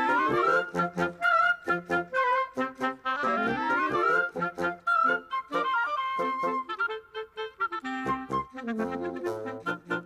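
Woodwind ensemble of clarinet, bassoon, saxophone and other reeds playing a lively cartoon-style piece, with quick rising scale runs and short detached notes.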